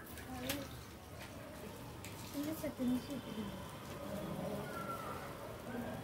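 Soft, intermittent voices with a few light clicks of metal utensils at the grill near the start, over a faint steady hiss.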